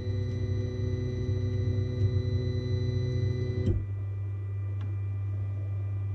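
Flashforge Dreamer NX 3D printer's stepper motors driving the print head along its freshly greased guide rods: a steady whine of several tones that stops with a click a little over three and a half seconds in. A low steady hum from the printer's cooling fans goes on throughout.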